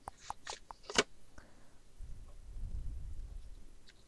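Folded paper pages rustling and crinkling in the hands as they are sewn together with thread, with a few small clicks and one sharp tap about a second in. A low rumble follows in the second half.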